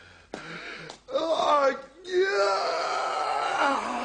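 A person's voice making long, drawn-out wordless wails or moans. A short wavering one comes about a second in, then a longer held one follows.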